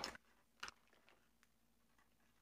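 Near silence, with a faint tick a little over half a second in and a fainter one later. These are a wire loop tool scraping a piece of firm oil-based modeling clay (Roma Plastilina No. 3).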